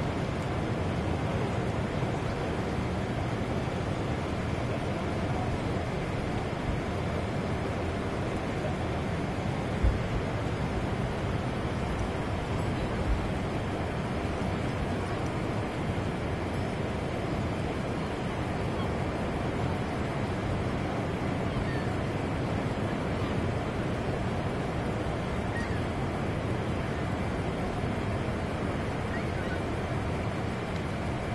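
Steady rushing roar of Niagara Falls, an even wash of water noise with no let-up, broken by two brief thumps about ten and thirteen seconds in.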